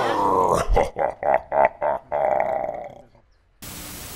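Logo-sting sound effect: a growling roar in a quick string of pulses, then a held note that fades out about three seconds in. TV static hiss cuts in sharply near the end.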